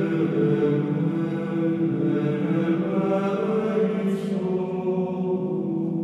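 Background music: slow choral chanting on long held notes over a steady low drone.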